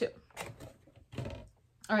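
Soft handling noises from a cardboard product box being set aside: a few light rustles and knocks, then a dull thump about a second in.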